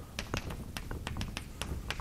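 Chalk tapping on a blackboard: a quick, irregular run of sharp taps, about five or six a second.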